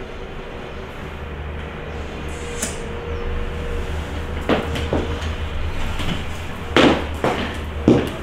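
Low steady room hum. From about halfway there are a handful of knocks and thumps as a person gets up off a bed and steps up close in heeled ankle boots; the loudest knock comes near the end.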